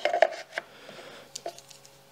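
Light clicks and small knocks of a plastic anti-splinter guard being handled and fitted onto a Milwaukee M18 Fuel plunge saw, a handful of separate taps spread across the two seconds.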